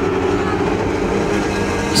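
A field of 1000cc motorcycle-engined Lightning sprint cars running together at high revs on a dirt oval, a loud, steady drone of several engines.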